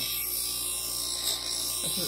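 Bench grinder running with a steady electric hum while a small carving-knife blade is held against its wheel, giving a steady high grinding hiss as the blade is hollow-ground.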